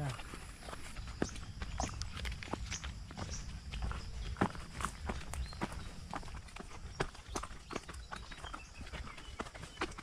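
Footsteps climbing a loose, rocky dirt path, with stones clacking and crunching underfoot in an irregular pattern over a low rumble.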